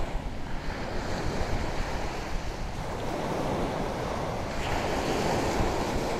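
Sea waves washing, with wind rushing on the microphone.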